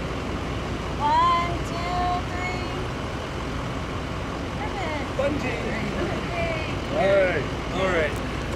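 Scattered voices of a small group talking and calling out in short snatches over a steady low rumble.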